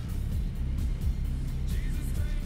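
Muffled music heard mostly as a steady low bass rumble, with little higher sound over it.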